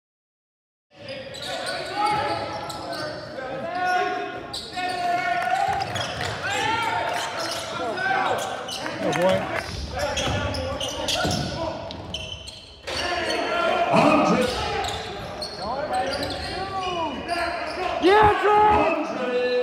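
Live basketball game sound in a large, echoing gym: the ball bouncing on the hardwood floor while players shout to each other. It starts after about a second of silence and jumps abruptly twice where the game footage is cut.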